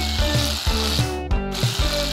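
Aerosol whipped cream can spraying cream onto a cake: a rattly hiss that breaks off briefly near the end. Background music with a steady beat plays under it.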